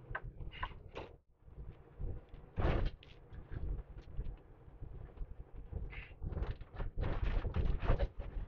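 Inside a semi-truck cab while driving: a steady low engine and road rumble, with knocks and rattles from the cab. The loudest knock comes about two and a half seconds in, and the rattles get busier near the end.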